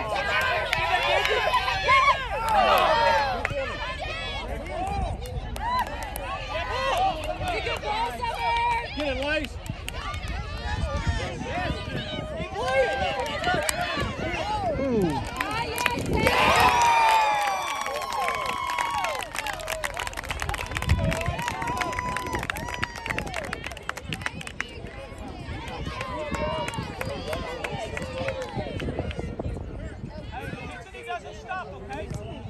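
Sideline voices during a youth soccer match: several people shouting and calling out to the players, overlapping, with louder bursts of calling a couple of seconds in and again about halfway through.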